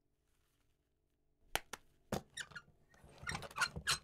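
Faint clicks and squeaks of a wooden double door being swung shut: a few light knocks from about halfway through, then short squeaks of the door near the end.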